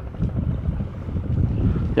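Wind buffeting the microphone outdoors: a loud, uneven low rumble.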